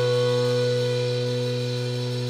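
Electric guitars and bass of a live doom metal band holding one chord as a steady drone, fading slightly as it rings out.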